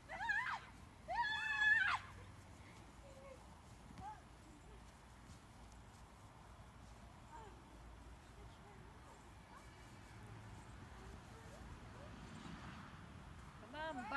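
Two high-pitched shrieks from a young person's voice, a short one at the start and a longer one about a second in, followed by faint outdoor background.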